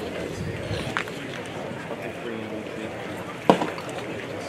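A pitched baseball smacks into the catcher's leather mitt once, sharply, about three and a half seconds in, over steady background chatter of people talking.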